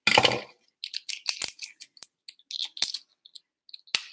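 Scissors cutting and thin plastic wrap crackling as the plastic seal on a small toner bottle is opened: a rustling snip at the start, then scattered short crinkles and clicks.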